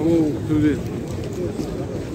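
A crowd of men talking over one another, many voices overlapping with no single clear speaker.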